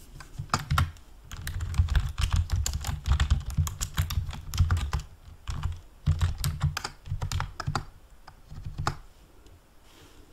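Typing on a yellow large-print computer keyboard: quick runs of key clicks with a dull thud under them. They pause briefly about halfway and stop about a second before the end.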